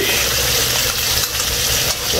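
Diced vegetables and seasoning sizzling in oil in a nonstick frying pan while a metal utensil stirs them, scraping and clinking against the pan.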